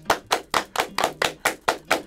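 Two people clapping their hands, quick, even claps at about six a second.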